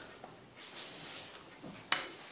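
Wire whisk stirring flour into batter in a glass bowl: soft, faint scraping, then one sharp clink of the whisk against the glass just before the end.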